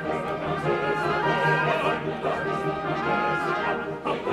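Orchestral music with prominent brass, sustained chords carrying on without a break.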